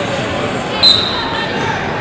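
Background din of a hall full of wrestling bouts, with voices from around the mats and a short, loud, shrill whistle a little under a second in, typical of a referee's whistle on a nearby mat.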